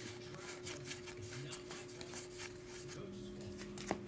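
Pokémon trading cards being slid off a stack and flipped through by hand: a quick, irregular run of soft rubbing ticks as the card edges and glossy faces scrape past each other, over a faint steady tone.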